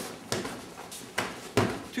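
Three sharp hand strikes against a freestanding punching bag's padded strike arm, the last two close together.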